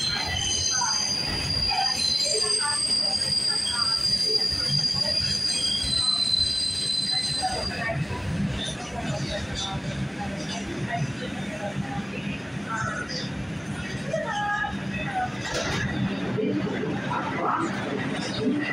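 New York City subway train running, its steel wheels squealing in several high steady tones that stop about eight seconds in, over a continuous rumble from the car.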